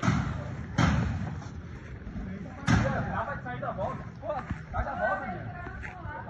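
Three loud, sharp thuds, two close together at the start and a third about two seconds later, followed by several voices in a scuffle.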